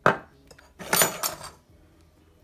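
Metal utensil knocking against a dish twice: a sharp knock at the start, then a longer clatter with a little ringing about a second in.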